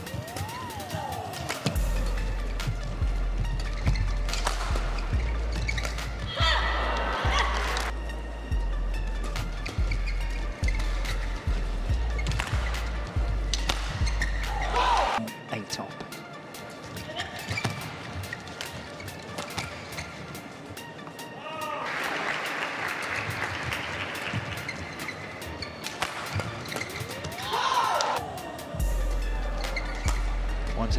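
Badminton rally: rackets striking the shuttlecock in sharp, irregular cracks, with shoe squeaks on the court. A deep bass line of background music plays through the first half and returns at the end.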